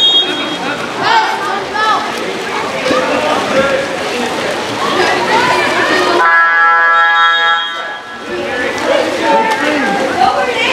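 Indistinct poolside voices of spectators and players calling out during a water polo game. A steady pitched tone sounds for about a second and a half, a little past the middle.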